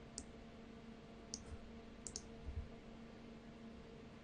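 A few faint computer mouse clicks, two of them close together about halfway through, over a steady low electrical hum, with a soft low thump just after.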